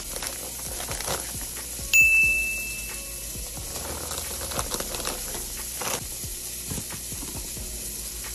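A plastic salad-kit bag crinkling as it is handled and cut open with scissors. A single bright text-message notification chime rings about two seconds in, the loudest sound here, and fades over about a second.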